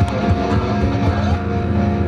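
A rock band playing live: electric guitar over drums and bass, with no singing.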